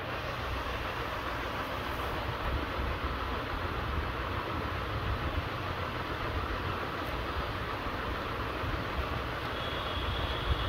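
Steady background rumble with a hiss, unchanging throughout and with no music.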